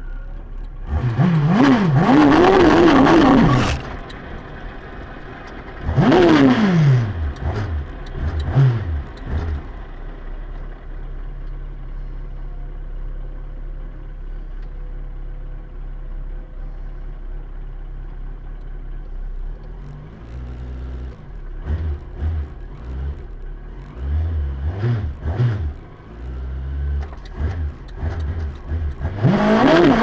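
Mini drag car's engine heard from inside the car: revved hard for a couple of seconds about a second in, revs falling away around six seconds, then idling with short throttle blips, and revved up loud again near the end as it stages on the start line for a quarter-mile run.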